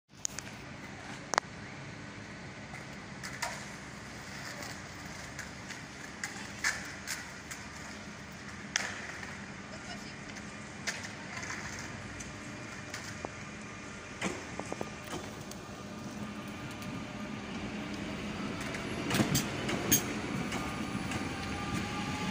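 CP 2240-series electric multiple unit approaching along the platform at low speed, growing louder over the last few seconds, with a faint rising whine near the end. Scattered sharp clicks over a steady station background.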